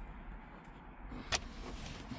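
One sharp click about two-thirds of the way through, over a low, steady rumble of handling noise around an opened van dashboard.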